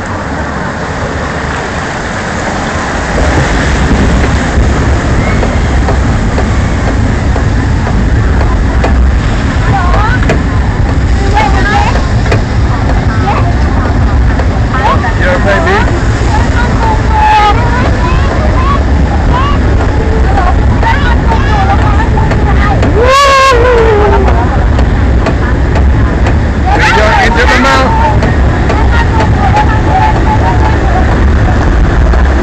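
Log flume boat riding up the chain lift: a loud, steady rumble of the lift conveyor with water running down the trough, growing louder about three seconds in. Passengers' voices break through, with a loud rising-and-falling cry about three-quarters of the way in.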